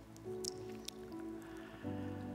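Soft, sustained keyboard chords, shifting to a new chord three times, with a few faint short clicks over them.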